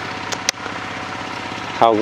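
A small engine running steadily in the background, with a single short click about half a second in.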